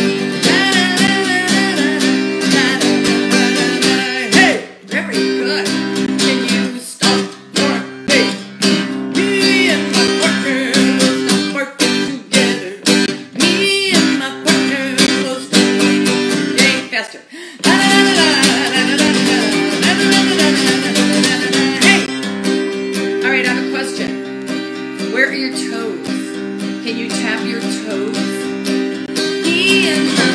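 Acoustic guitar strummed steadily with a woman singing a children's song along with it. The playing briefly drops out about two-thirds of the way through.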